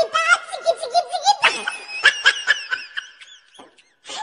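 A woman laughing hard in a high pitch, a long run of rapid bursts of laughter that trails off about three and a half seconds in.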